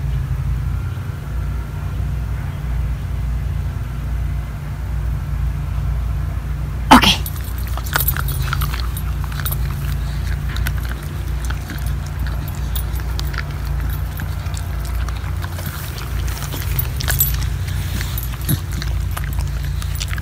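Two miniature schnauzers at their treats: one short bark or yelp about seven seconds in, then scattered small crunching clicks as they chew. A steady low rumble runs underneath.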